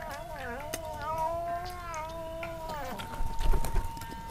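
A cat meowing in long, drawn-out calls that rise and fall in pitch, stopping about three seconds in. Near the end a burst of low thumps is the loudest sound, and a steady high tone begins.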